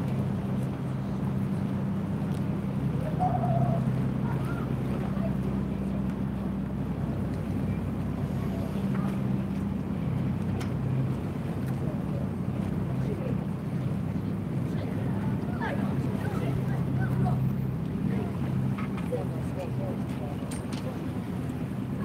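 Low, steady engine drone of a boat on the harbour water, with faint voices in the background.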